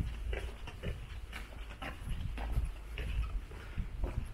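Footsteps on cobblestone paving at a walking pace, about two a second, over a low rumble.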